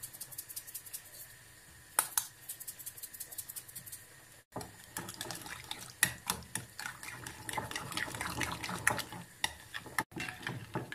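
Metal spoon stirring watery yogurt in a glass bowl: a dense run of quick clinks and wet scraping against the glass through the second half. Before it come only a few scattered taps, with one sharper clink about two seconds in.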